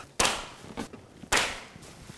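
Chalk line snapped against a drywall wall twice, about a second apart, each a sharp slap.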